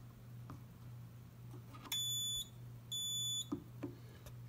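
A fire alarm control panel's built-in sounder gives two short, high beeps about a second apart as its buttons are pressed and the alarm is reset. A few faint button clicks and a steady low hum run underneath.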